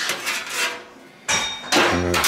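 Thin sheet-steel car body panels being handled: a few light knocks, then about a second and a half in a louder metal rattle with a brief high ring.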